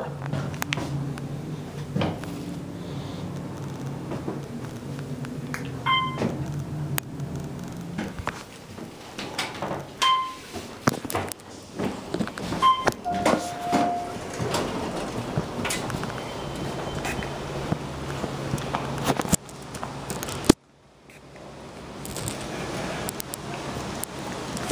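Otis Series 1 hydraulic elevator heard from inside the cab: a steady low hum that stops about eight seconds in, three short beeps, then a longer chime tone about 13 seconds in. Door sounds and knocks follow.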